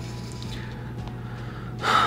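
A pause with only a steady low hum, then a person's quick intake of breath near the end, just before speaking.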